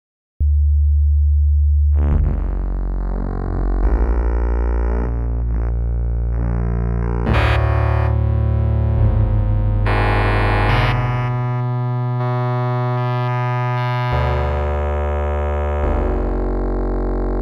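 TestBedSynth software synthesizer playing a sequence of sustained notes rich in overtones. A low note starts about half a second in; from about two seconds on, the pitch and tone shift every second or so.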